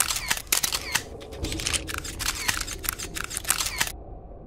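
Camera shutters firing rapidly and irregularly, several clicks a second, like a crowd of press cameras. The sound stops abruptly near the end.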